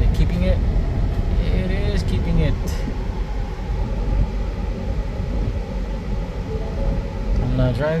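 Steady road and engine noise inside the cab of a 2019 Ford Ranger cruising on the highway at about 53 mph, a constant low rumble.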